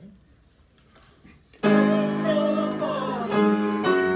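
Piano and a small choir entering together with a loud, sudden chord about one and a half seconds in, after a near-silent pause. They go on in sustained chords that change twice near the end.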